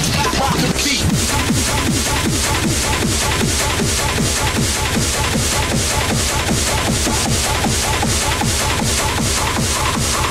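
Hard techno (schranz) DJ mix: a fast, steady kick drum on every beat under dense, driving electronic percussion.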